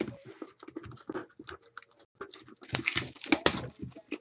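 Plastic wrapping on a trading-card box and pack being torn off and crumpled by hand: a run of irregular crackles that gets louder and busier a little under three seconds in.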